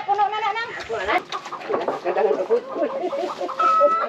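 A rooster crowing, its call ending about half a second in, then chickens clucking.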